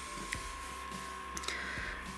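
Metal USB desk fan running: a steady whir with a thin, constant high whine, and a few light clicks as a small plastic fan and its cable are handled.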